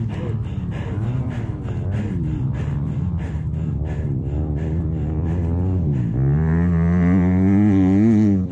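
A man groaning in pain after crashing a motocross bike, with long, wavering moans that grow louder and more drawn-out near the end. The pain is from a shoulder that he says is out.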